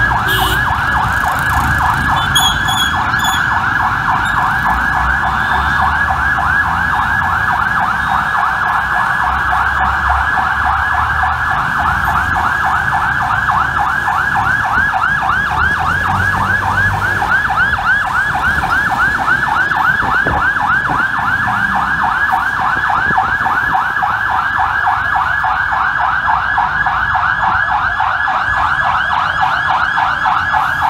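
Fire engine's electronic siren on a fast yelp, a rapid up-and-down sweep repeating without a break, with engine and traffic rumble underneath.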